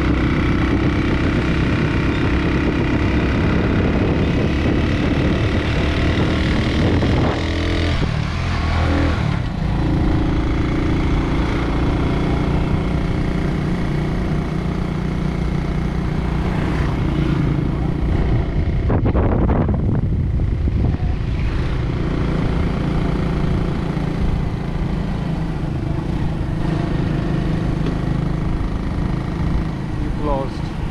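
Motorcycle engine running steadily as the bike rides along, heard close up from the pillion seat. The engine note shifts about eight seconds in and again near twenty seconds, as with gear changes or throttle changes.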